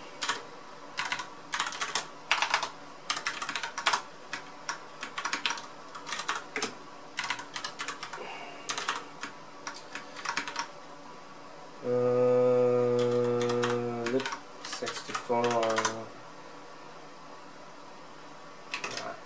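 Typing on a computer keyboard: irregular runs of keystrokes as a terminal command is typed. About twelve seconds in, the typist gives a long, steady hummed 'mmm' for about two seconds, then a few more keystrokes and a shorter hum.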